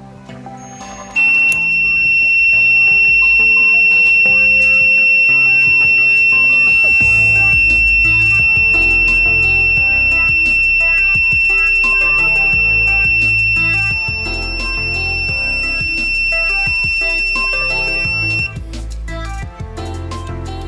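Buzzer of an LM358 thermistor fire alarm circuit sounding one steady high-pitched tone, starting about a second in: the circuit is triggered by a lighter flame heating its thermistor. The tone cuts off suddenly near the end.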